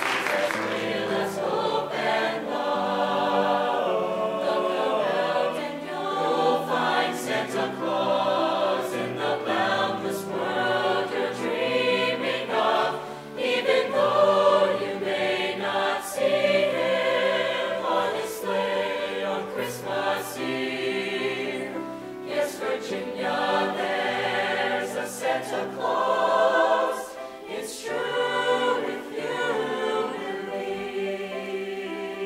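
Mixed show choir of male and female voices singing together.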